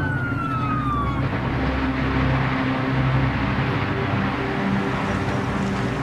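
An emergency vehicle's siren wailing, its pitch falling over the first second. It is followed by a steady rushing noise with low, steady droning tones underneath.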